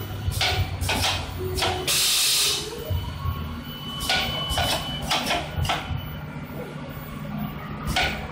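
Headset counting and packing machine running: a steady low hum with short hissing strokes every half second or so and one longer, louder hiss about two seconds in.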